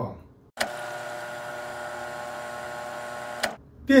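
A steady electronic hum made of many overtones. It starts abruptly about half a second in and cuts off abruptly about three and a half seconds in.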